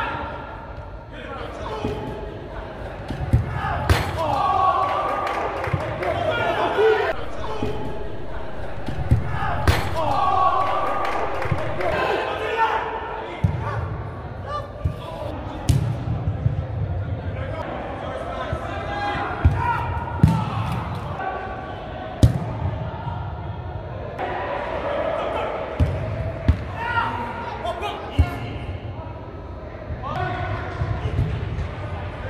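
Players shouting and calling to one another during an indoor soccer match, echoing in a large hall, with several sharp thuds of the ball being kicked.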